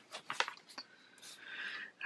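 Hands handling paper planner pages and a sticker sheet: a few small taps in the first second, then a soft papery rustle in the second half as a date-cover sticker is laid on the page.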